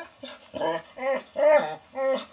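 A dog barking in a run of short, pitched barks, about two a second, the loudest near the middle.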